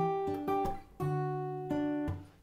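Steel-string acoustic guitar fingerpicked in a high position up the neck: about five plucked notes and chord tones, each left to ring and die away.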